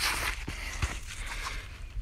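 Rustling handling noise with two faint knocks, about half a second and just under a second in.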